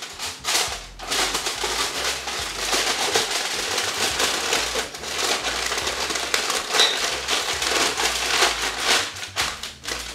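Heavy-duty aluminum foil crinkling and crackling as it is folded and crimped tightly around a foil casserole pan, with a short pause about a second in.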